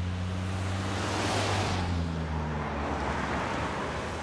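Snowplow truck's engine running low and steady under road and wind noise, with a rushing swell that peaks about a second and a half in.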